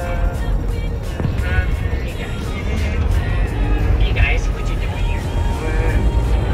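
Steady low rumble of a moving coach bus heard from inside the cabin, with music and voices over it.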